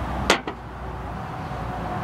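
A single short, sharp handling sound from a large drink cup about a third of a second in, over a low steady outdoor background rumble.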